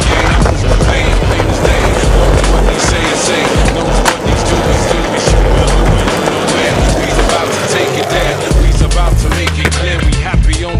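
Skateboard wheels rolling over rough asphalt, a steady grinding roll that fades out about nine seconds in. Hip-hop music plays underneath.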